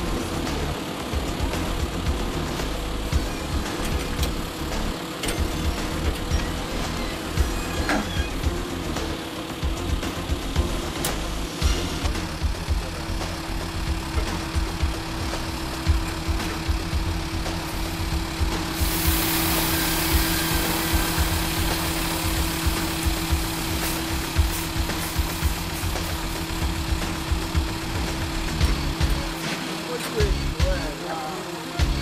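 Truck engine idling with a steady hum. A hiss rises for about five seconds roughly two-thirds of the way through.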